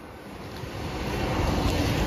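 JR East E001 series 'Train Suite Shiki-shima' passing through the station, its running noise swelling quickly as the front cars draw level.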